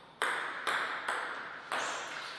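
Table tennis ball bouncing four times, about half a second apart, each a sharp click of similar loudness.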